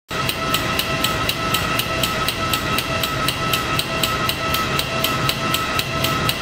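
Solenoid valve clicking rapidly and evenly, about four to five clicks a second, over a steady high whine. It is switching hot and cold water through the tubing around a coiled polyethylene fishing-line artificial muscle that is cycling at 2 Hz.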